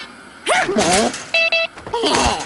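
A cartoon character's wordless vocal sound with sliding pitch about half a second in, followed by a short, steady electronic-sounding beep near the end.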